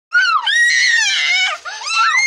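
A young child shrieking in a run of shrill, high cries that rise and fall, the middle one held for about a second.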